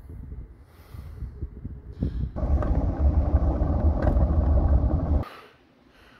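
A couch being dragged across wet pavement. It starts as an irregular rough scraping, then from about two seconds in becomes a loud continuous grinding scrape that stops abruptly about a second before the end.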